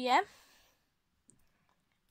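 A girl's voice finishing a short word, then near silence broken by a couple of faint clicks.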